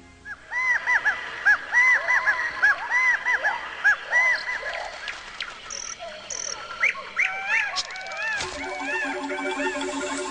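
Jungle ambience sound effects: many overlapping animal calls, short chirps that rise and fall in pitch, thinning out after about five seconds. About eight and a half seconds in there is a sharp knock, and music with steady held notes comes in.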